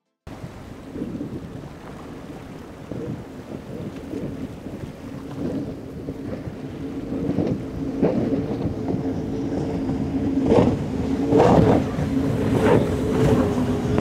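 A Midnight Express boat's five Mercury Racing 450R supercharged V8 outboards running at speed. It starts as a rush of wind and water, and a steady engine drone comes in about halfway through and grows louder as the boat comes closer. Loud surges of spray and water noise come near the end.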